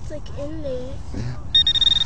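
Handheld metal-detecting pinpointer sounding a loud, steady high-pitched tone that starts about one and a half seconds in, signalling metal at its tip in the dug hole.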